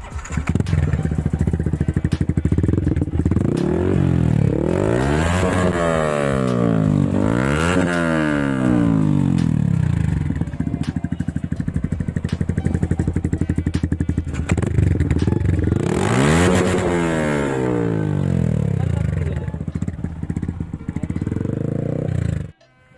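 Yamaha R15M's 155 cc single-cylinder engine with an aftermarket exhaust, idling and revved on the throttle. Three quick rises and falls come between about 3 and 9 seconds in, one more around 16 seconds, with a steady idle in between.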